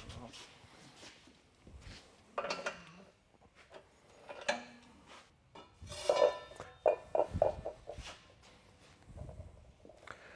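Steel parts clanking and scraping as the seed disc opener blade is taken off a John Deere MaxEmerge XP planter row unit, with a ringing metal clang about six seconds in.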